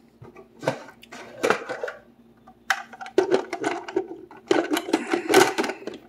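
Food processor chopping shredded poached chicken: a few short clatters in the first couple of seconds, then the motor running in short pulses with a steady hum from about three seconds in, loudest near the end.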